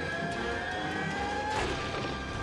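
Movie soundtrack from a typhoon scene: dramatic music over steady storm noise, with one long tone slowly rising in pitch until it drops out near the end.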